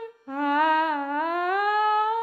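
Wordless sung humming in a song: a held note breaks off briefly, then a new note starts low and glides smoothly upward with a slight waver.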